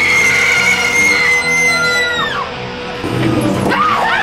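A woman's long, high-pitched scream, held on one note and breaking off about two and a half seconds in, over loud rock music. Shorter rising and falling cries follow near the end.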